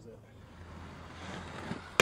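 Inline skate wheels rolling on concrete, growing louder over the second half as the skater approaches a metal handrail. It ends in a sharp hit right at the end as the skates land on the rail.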